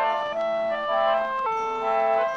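Pump organ (reed organ) playing an instrumental passage with no singing: sustained chords under a melody, the notes changing every half second or so.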